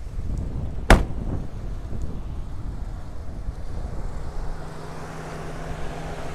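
A pickup truck door shuts with a single loud thud about a second in, followed by low rumbling noise. From about four seconds in, the steady low hum of the GMC Sierra's 6.2-litre V8 idling comes through more clearly as the hood goes up.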